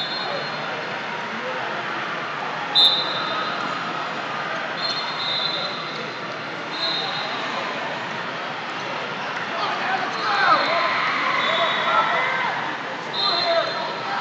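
Referees' whistles giving short, shrill blasts every second or two across a large, echoing sports hall, over a steady hubbub of distant voices; louder shouting voices come in about ten seconds in.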